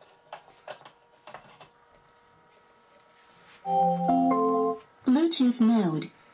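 Built-in speaker of an LED Magic Ball disco light playing its power-up sound after a few faint clicks. About four seconds in comes a short, loud organ-like electronic chime that steps through a few notes. It is followed by a brief synthesized voice prompt announcing that the ball has started in Bluetooth mode.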